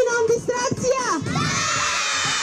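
A large crowd of children shouting and cheering together, answering a host's call. A few single voices stand out in the first second, then the whole crowd yells together again.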